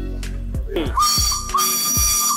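Background music, then about a second in a steam locomotive's whistle starts blowing, one loud steady high note.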